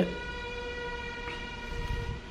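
A single steady pitched tone, like a distant horn or whistle, held for almost two seconds and fading just before the end, over a low rumble.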